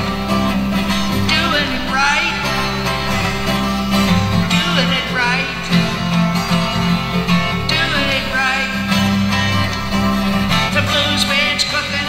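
Music: a twelve-string guitar playing a blues rock-and-roll song, with a melodic voice line over it.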